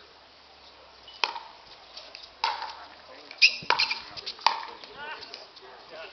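Pickleball rally: a series of sharp hollow pops as paddles strike the plastic ball, about one a second, with two hits in quick succession near the middle, the loudest of them.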